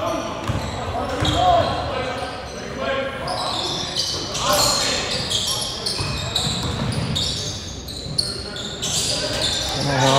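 Basketball dribbled on a hardwood gym court during play, with voices and other court sounds echoing in the large hall.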